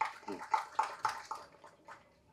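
Quiet, indistinct speech away from the microphone, in short soft bursts.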